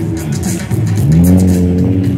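Car engine revving: its pitch rises about two-thirds of the way through and then holds steady. Music with a steady beat plays underneath.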